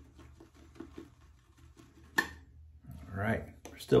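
Quiet handling of wet-shaving gear: a few faint light ticks and one sharp hard click about two seconds in, with a brief murmur near the end.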